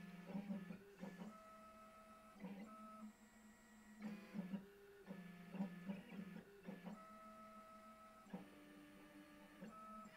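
Small CNC router's stepper motors whining as the machine moves through its toolpath without cutting. The pitch steps to a new note with each move, roughly every second.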